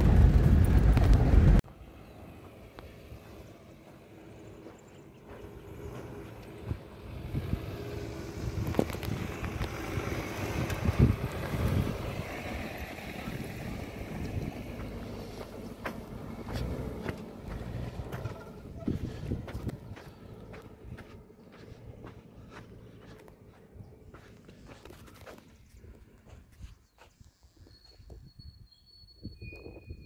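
A minivan driving along a dry dirt road, its engine and tyre noise growing as it passes and fading as it drives away. It opens with a burst of loud in-car road noise that cuts off suddenly about a second and a half in, and a bird chirps near the end.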